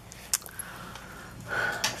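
A short click about a third of a second in, then a breath drawn in near the end, just before speech resumes.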